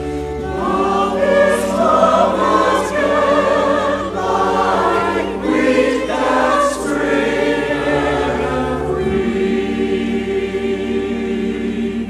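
Church choir singing slow, long-held chords, accompanied by pipe organ with steady low notes underneath.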